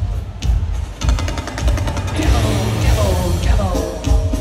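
A heavy metal band playing live through a large PA, heard from within the crowd: heavy drums and bass with distorted guitars, with a quick run of rapid drum hits about a second in.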